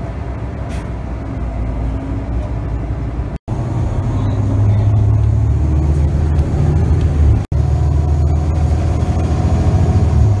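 Bus engine and road noise heard from inside the cabin of a moving bus, a steady low hum that grows stronger about a third of the way in. It is broken twice by abrupt silent gaps where the recording is cut.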